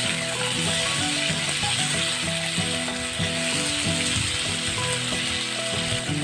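Baby potatoes, tomato and green peas sizzling in oil in a non-stick kadai as a spatula stirs them, a steady frying hiss.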